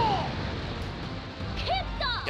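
Anime episode soundtrack during a fight scene: a short falling cry at the start, music and noise beneath, and a character's brief line near the end.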